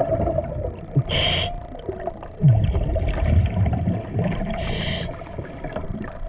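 Scuba diver's regulator breathing underwater: two hissing inhalations about three and a half seconds apart, with a low rumble of exhaled bubbles between them and a steady hum underneath.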